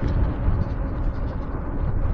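Steady low rumble of wind and road noise from a Super73 RX e-bike riding along at traffic speed.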